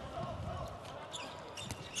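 Faint court sound of a handball match: the ball bouncing and short knocks on the indoor court, with players' voices calling.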